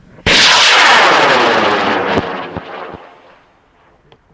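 High-power L1300 solid rocket motor igniting with a sudden loud roar at liftoff. The roar sweeps and fades over about three seconds as the rocket climbs away, with a few sharp crackles near the end.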